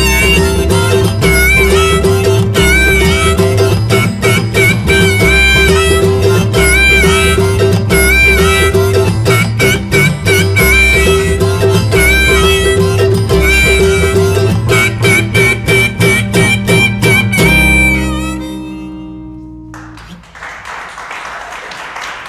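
Acoustic roots band playing an instrumental passage: harmonica with held, bending notes over strummed acoustic guitar, mandolin and a steady upright bass line. The band stops on a final chord that rings and fades, and audience applause starts near the end.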